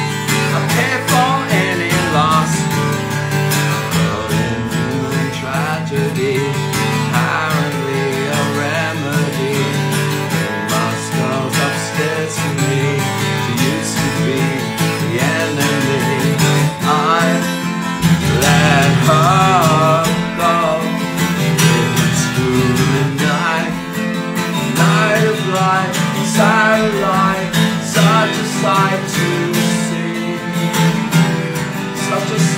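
Twelve-string Guild acoustic guitar strummed and picked through an instrumental passage of a song, played without words.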